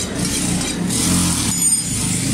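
A motor vehicle engine running close by, growing louder about a second in.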